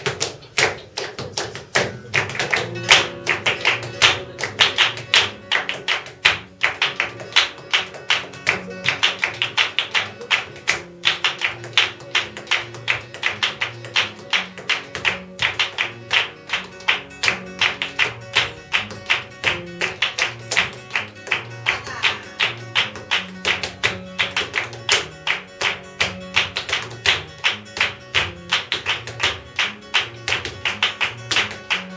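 Flamenco music: a flamenco guitar playing under fast rhythmic palmas (hand-clapping) and the dancer's heel-and-toe footwork.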